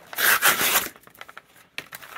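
Cardboard box packaging being torn open by hand: one loud rip lasting under a second, followed by a few faint rustles and clicks.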